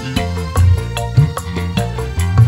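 Dangdut koplo band playing an instrumental passage: arranger keyboard melody over bass and an even, driving drum rhythm.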